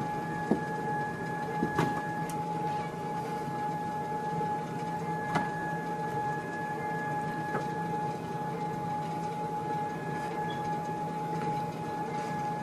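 Running Sole treadmill: a steady motor whine and hum as the belt turns, with a few light clicks.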